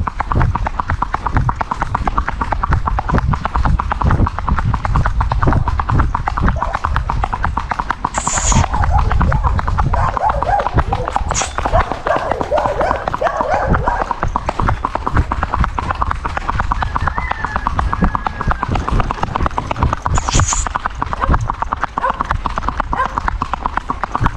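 A young mare's hooves striking a paved road in a fast, even rhythm as she is ridden in her gait.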